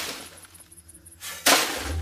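A sudden short rasping noise about one and a half seconds in, after a near-quiet moment: a radio-drama sound effect.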